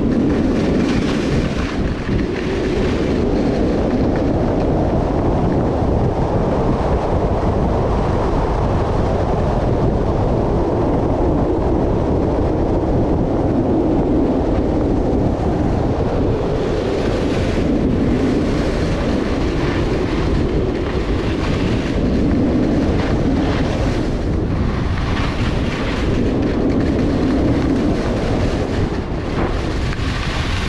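Wind rushing over the camera microphone and skis running over packed snow on a fast downhill run: a steady, loud, rushing rumble.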